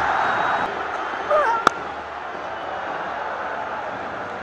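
Steady stadium crowd noise from a cricket ground. About a second and a half in there is a brief wavering high call, and just after it a single sharp click. The crowd noise eases a little after that.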